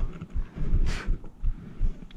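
Low, irregular buffeting on the camera's microphone, with a short hiss about a second in.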